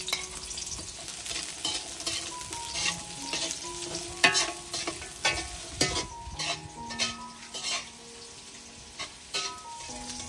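Sliced onion rings sizzling in hot oil in a steel wok, stirred with a metal slotted spatula that scrapes and clacks against the pan several times, most often from about four to eight seconds in.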